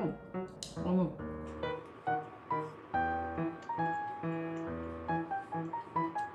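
Background music: a slow melody of held notes.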